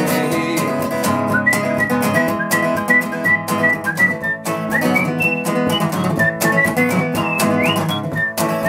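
A man whistling a melodic solo over his own acoustic guitar playing, the whistle standing in for the song's guitar solo. The whistled notes come in about a second and a half in as a run of short, clear notes, with a quick upward slide near the end.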